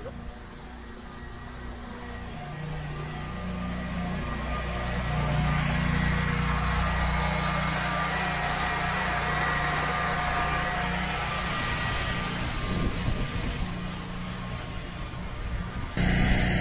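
Electric drive motor at the base of a Heights aluminium tower running steadily as it raises the tower, a continuous mechanical hum with a faint whine. It grows louder over the first few seconds and eases off a little near the end.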